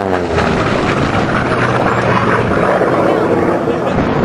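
Unlimited-class propeller racing plane's piston engine passing low overhead. Its pitch drops at the very start as it goes by, then gives way to a loud, steady, rushing engine drone.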